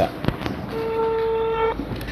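A phone's electronic call tone: one steady beep lasting about a second, starting shortly after a short knock, then cutting off cleanly.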